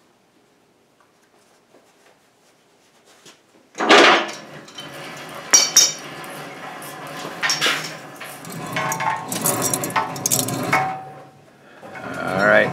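Near silence for the first few seconds, then a steel winch cable being pulled by hand off the wrecker's boom winch: sharp metallic clanks and a rattling, scraping stretch as the cable drags over the metal boom and pulley.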